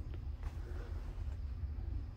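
Quiet background noise: a low rumble with a faint steady hum.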